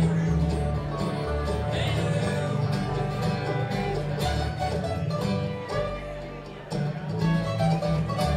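Bluegrass band playing live: banjo, bowed fiddle, acoustic guitar, mandolin and upright bass together, with steady bass notes under quick plucked-string picking.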